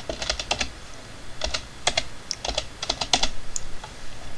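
Computer keyboard typing: about eight keystrokes in an uneven rhythm as a password is entered.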